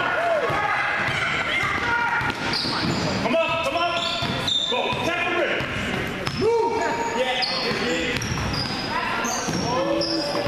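Basketball being dribbled on a hardwood gym floor, with sneakers squeaking and children's voices shouting across the court, all echoing in the gymnasium.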